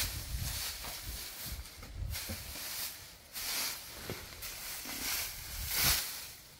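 Dry rice straw rustling in several short swells as a bundle of it is handled and shaped by hand.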